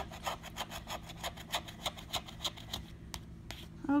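Scratch-off lottery ticket being scraped with a plastic scratcher tool: quick rasping strokes, about five or six a second, rubbing off the coating. The strokes stop about three seconds in, with a couple of last scrapes after.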